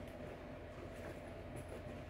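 Quiet room tone: a faint, steady low hum, with soft handling noise as a pair of suede ankle boots is turned over in the hands.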